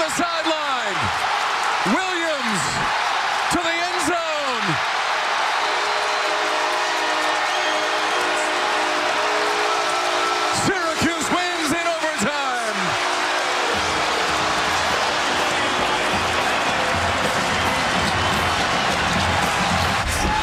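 Large stadium crowd cheering and yelling loudly after a game-winning interception return for a touchdown. Sustained musical notes sound through the middle, and a steady low drumbeat comes in for the last few seconds.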